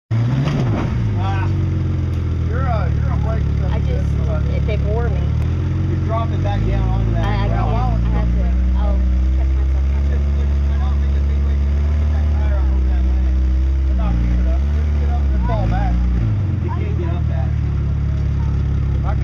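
Jeep Cherokee XJ engine running under load as it crawls up a rock ledge: the revs rise about six seconds in and are held high, dip briefly a couple of times, then drop back near the end. Voices call out over it now and then.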